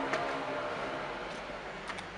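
Steady, low background hum of the surroundings, with a faint click near the start and another near the end.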